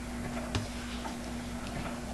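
Quiet room tone with a steady low hum, a faint click about half a second in, and a few fainter ticks after it.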